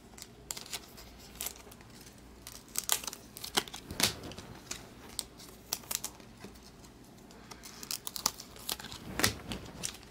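Baseball trading cards being handled and flipped through by hand: irregular crisp snaps and rustles, busiest about three to four seconds in and again near the end.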